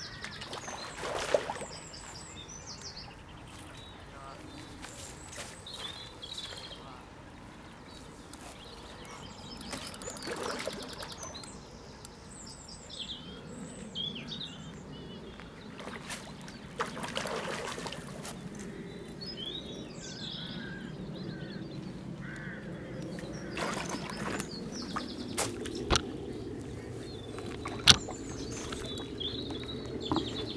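Small birds chirping and singing on and off over steady outdoor background noise, with a few brief rushes of noise. Near the end come a couple of sharp clicks, the last one the loudest sound.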